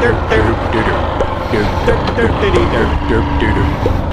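Honda Fan 125's single-cylinder four-stroke engine running steadily at low revs, with short voice-like sounds over it.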